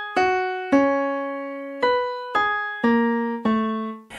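Software piano played from a MIDI keyboard: a slow single-note melody of six notes, each struck and left to ring out, with the last two notes lower. It is a trial chorus melody in E major.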